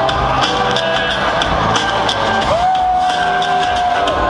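A rock band playing live, with electric guitar, bass and drums, recorded from the audience. About two and a half seconds in, a single note slides up and is held.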